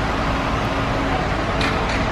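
Steady rushing background noise with a faint low hum running under it.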